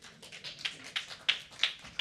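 Scattered applause from a small audience: irregular hand claps, a few louder claps standing out over fainter ones.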